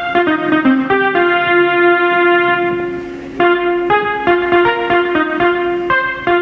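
Treble-test section of a sound-check track played through a Ground Zero midrange speaker on a test bench: quick piano-like keyboard notes, then a held chord that fades briefly about three seconds in, and then the quick notes return.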